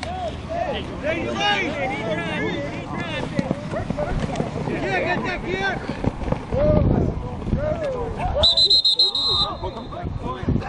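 Several men shouting and calling over one another during a flag football play, then a referee's whistle blows once, a steady shrill tone lasting about a second near the end, marking the play dead.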